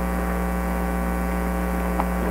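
Steady electrical mains hum from the audio system: a constant low drone with a ladder of evenly spaced overtones, unchanging throughout.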